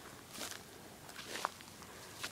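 Faint footsteps on dry, cracked mud and grass, with a few soft crunches.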